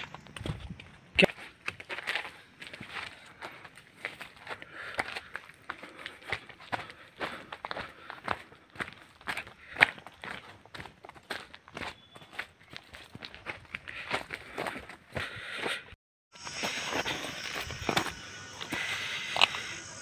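Footsteps crunching on loose stones, brick rubble and dry earth, an irregular run of sharp scrapes and crackles. A steady high hiss joins the steps about four seconds before the end.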